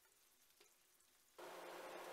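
Near silence, then about one and a half seconds in a faint sizzle of tofu slices frying in oil comes in, with a faint steady hum under it.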